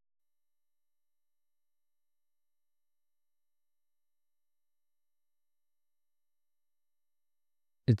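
Silence with no sound at all, then a voice starts speaking right at the end.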